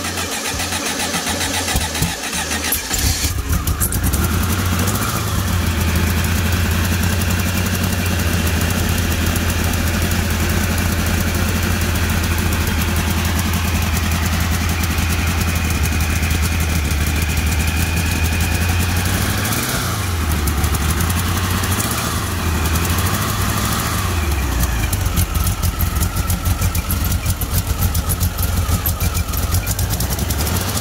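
Turbocharged, fuel-injected air-cooled VW flat-four engine in a Beetle catching about three seconds in and settling into a steady idle. Its engine speed rises and falls a few times in the second half.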